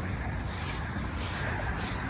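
Steady rustling and rubbing noise from a handheld phone being carried while walking over rock and dry grass, with wind rumbling on the microphone.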